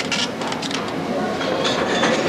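A cash register's receipt printer printing a ticket, a fast mechanical rattle of quick clicks.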